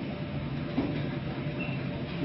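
Steady low rumble of a gas carrier ship under way at sea, with a small click about a second in.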